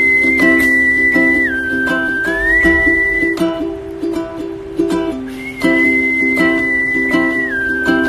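Ukulele strummed in a steady rhythm while a man whistles a slow tune of long held notes over it, stepping down in pitch. The whistling comes in two phrases, with about two seconds of strumming alone between them.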